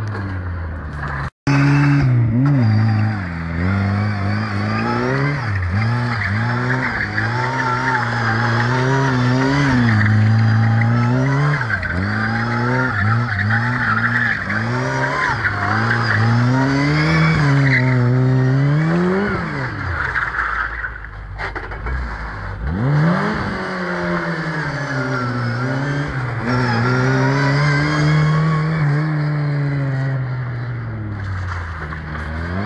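Lada 2107's four-cylinder engine revving up and down again and again as the car slides through turns on concrete, with its tyres squealing. Around two-thirds of the way through the revs drop to a low rumble, then climb again.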